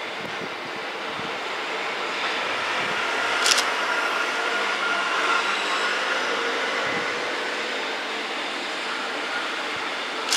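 EF66 100-series electric locomotive hauling a container freight train past, a steady rumble of wheels and motors that grows louder over the first few seconds and then holds. There is a brief high hiss about three and a half seconds in.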